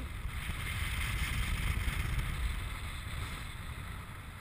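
Airflow rushing over the camera microphone of a paraglider in flight: a steady low rumble with a hiss that swells slightly in the middle.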